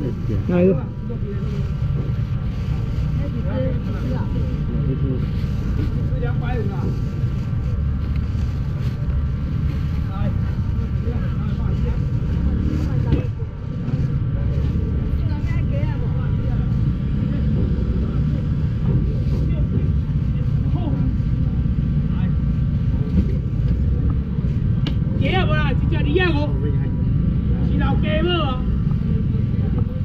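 Busy outdoor market ambience: a steady low rumble with scattered crowd voices in the background, which grow more prominent near the end.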